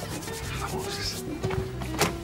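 Quick rubbing and scraping over soft background music, ending in a couple of light knocks near the end as a metal door bolt is handled.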